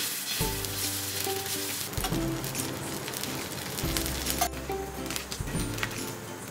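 Adai batter sizzling on a hot iron tawa, a steady hiss heard under background music that has a low bass line.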